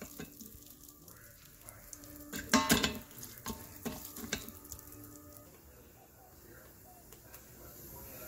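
Wooden spoon stirring and scraping brown jasmine rice in the stainless steel inner pot of an Instant Pot on sauté, with faint sizzling as the rice toasts in oil. A brief voice-like sound comes about two and a half seconds in.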